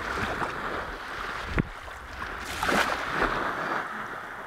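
Small sea waves washing on the shore, with wind on the microphone, the noise swelling and ebbing. A single sharp click about one and a half seconds in.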